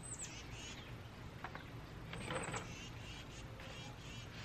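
Birds chirping faintly in short calls, twice, over a quiet steady outdoor background.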